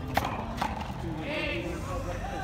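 Frontón a mano handball rally: the ball smacks sharply twice, about half a second apart, as it is struck by a bare hand and hits the wall. Voices call out about halfway through.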